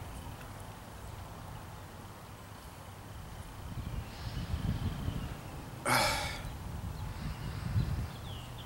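A man sniffing the aroma of a glass of beer held to his nose, with one short, loud sniff about six seconds in.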